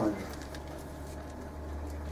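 Room tone in a pause between sentences: a steady low hum, with little else heard.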